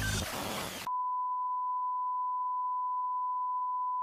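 Broadcast line-up test tone over a test card: a single steady, pure high beep that starts about a second in, as the music ends, and holds without change.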